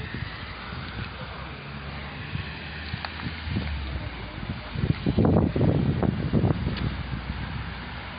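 Rustling and bumping from a phone handled close to leaves and plants, with wind on the microphone over a steady low hum. It is loudest in a rough, irregular stretch after about five seconds.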